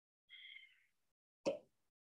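A single short pop about one and a half seconds in, in an otherwise near-silent pause.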